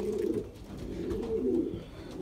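Racing pigeons cooing: low, wavering coos running on one after another.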